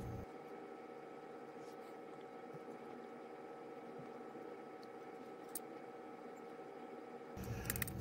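Quiet room tone: a faint steady hum with a few faint ticks.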